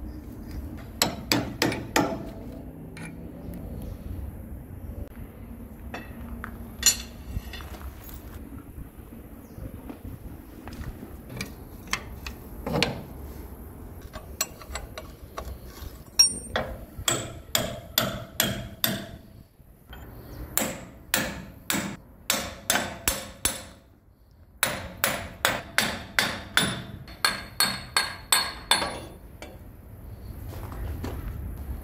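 Hammer blows, steel on steel, struck against the trunnion ball at the end of a grader's hydraulic cylinder. A short cluster comes about a second in, then scattered single hits, then long runs at about three strikes a second with brief pauses between them.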